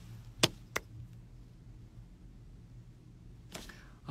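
Two sharp clicks about a third of a second apart, near the start, over a low steady hum. A short breathy noise comes near the end.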